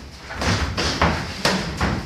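Boxing gloves landing and feet stamping on the ring canvas during a close sparring exchange: a quick run of several sharp thuds and slaps, getting louder about half a second in.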